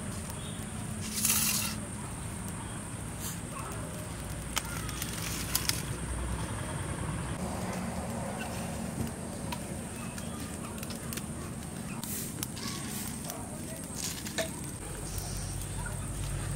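Dry twigs and leaves being snapped and handled beside a small wood fire in a clay stove: a loud rustle about a second in, then scattered sharp snaps and faint crackling.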